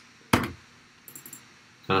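Computer-desk clicks: one sharp click about a third of a second in, then a few faint light ticks just after a second in.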